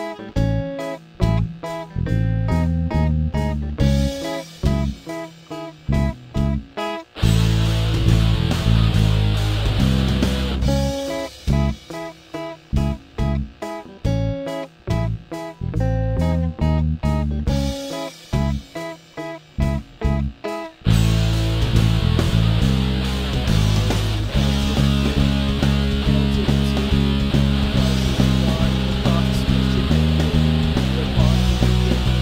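Indie rock band playing an instrumental passage on guitars, bass and drums, with no singing. Short, stopping chords alternate with stretches of full, sustained playing; the band holds full from about two-thirds of the way through.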